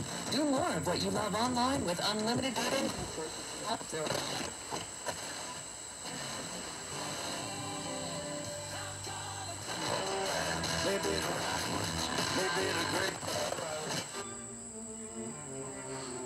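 FM radio broadcast from a vintage Akai CR-80T receiver's tuner as the tuning dial is turned. A voice comes first, then music, over static interference and a thin steady high tone.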